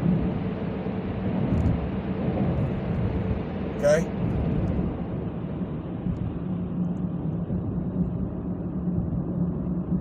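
Steady road and engine noise heard inside a moving car's cabin as it climbs out of a highway tunnel, with a brief sharp sound about four seconds in. The upper hiss of the noise thins after about six seconds, once the car is out of the tunnel.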